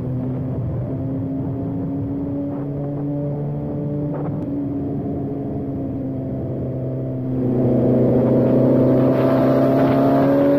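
BMW S1000RR's inline-four engine running steadily at cruising revs, then about seven seconds in the throttle opens: the exhaust gets louder and the revs climb smoothly.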